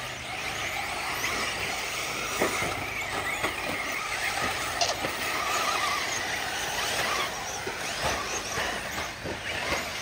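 Several RC truggies racing on a dirt track, their motors whining up and down in pitch as they accelerate and brake, several overlapping at once, with a few short clicks.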